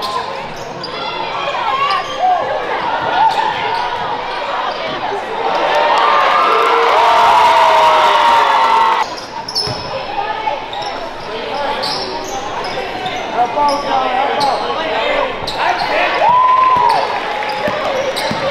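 Basketball being dribbled on a hardwood gym floor, with sneaker squeaks and players' and spectators' voices. The voices are loudest from about six to nine seconds in.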